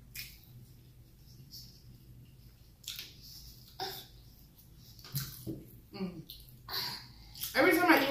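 Quiet, scattered eating sounds: fingers working and squeezing cold rice and palm butter in a metal pot, with wet mouth sounds of chewing, a string of short soft clicks and smacks.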